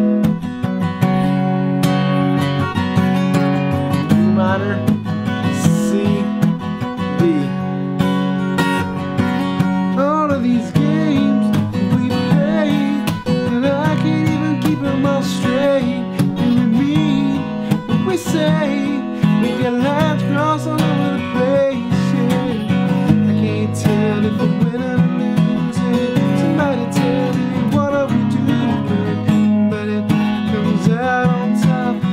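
Acoustic guitar, capoed at the fourth fret, strummed steadily through a sequence of open chords, with a man's voice singing along over much of it.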